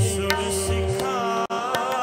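Sikh kirtan: a harmonium holds steady chords under tabla, whose deep bass-drum strokes bend in pitch between sharper strikes. A voice sings the shabad line from about a second in. The sound cuts out for a split second about one and a half seconds in.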